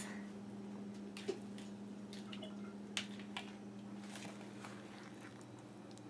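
A spoon stirring thick cake batter in a plastic bowl: faint wet squishes and scattered light clicks of the spoon against the bowl, over a steady low hum.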